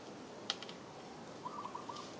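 A single sharp click about half a second in, then a quick run of four short chirps from an animal near the end, over a faint steady hiss.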